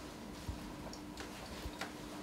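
Faint footsteps: two soft low thumps about a second apart, with a few light clicks, over a faint steady room hum.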